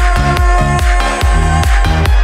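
Vinahouse electronic dance remix with heavy bass under a steady, fast beat and a held synth note.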